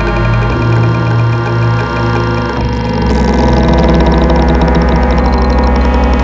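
Experimental electronic music on synthesizers: dense layers of sustained tones over a buzzing low drone, with rapid repeating high pulses. The low tones shift abruptly about half a second in and again about two and a half seconds in.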